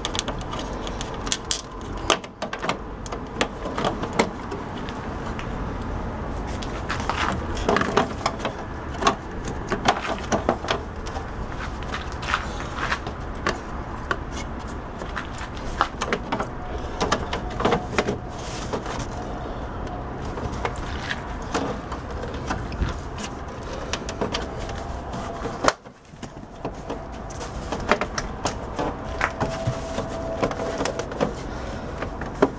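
Scattered plastic clicks and knocks from handling a television's plastic back housing while fitting a small push-reset circuit breaker into it, over a steady background noise.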